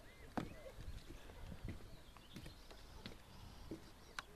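Footsteps on a wooden plank boardwalk: shoes knocking on the boards, one clear step about half a second in, then fainter, irregular steps.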